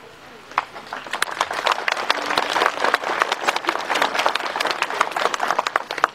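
A crowd of guests applauding, starting about half a second in and going on as a dense patter of many hand claps.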